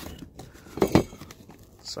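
Pistol magazines being handled: a few light taps, then two sharp clicks close together about a second in as a magazine knocks against a hard surface.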